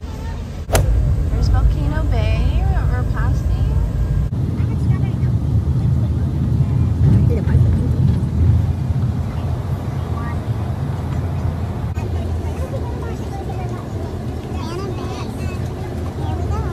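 Low, steady rumble of a bus's engine and road noise heard from inside the bus, with faint voices of other passengers. A single sharp knock comes about a second in.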